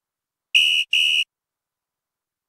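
Two short high-pitched tones in quick succession, each about a third of a second long and steady in pitch.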